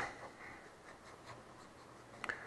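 Faint scratching of writing strokes as a diagram is drawn, opening with a sharp tap of the pen or marker on the surface, then several light scratches over the next second and a half.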